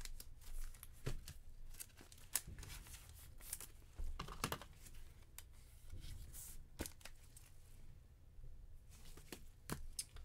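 Faint crinkling of clear plastic and scattered small clicks as a trading card is slid into a plastic sleeve and a rigid toploader, with a sharper click near the end.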